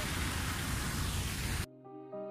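Loud, steady rushing outdoor noise on a handheld camera's microphone, heaviest in the low end. Near the end it cuts off suddenly to soft instrumental background music with held notes.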